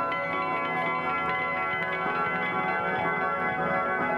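Experimental turntable music played from vinyl: an old country steel-guitar record slowed right down so its notes ring like chimes, many held, overlapping tones sounding together in a steady wash.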